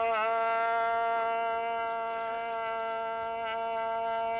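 A hand-held horn blown in one long, steady note, with a brief wobble in pitch just after the start.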